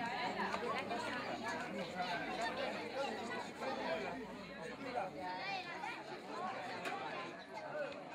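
Indistinct chatter of many people talking at once, with no single voice standing out, easing slightly toward the end.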